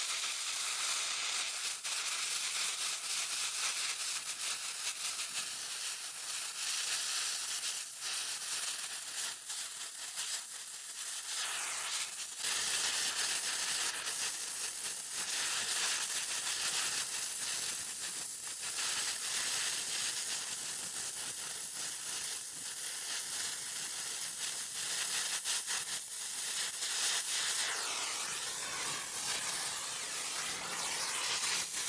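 Gas torch flame hissing steadily as it heats a copper transmission line's flange to flow silver solder. It gets louder about twelve seconds in, and a faint high whistle in the flame drops in pitch near the end.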